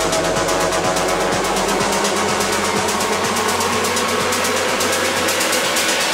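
Trance track in a build-up: a fast repeating beat with a rising sweep, the deep bass dropping out about two seconds in.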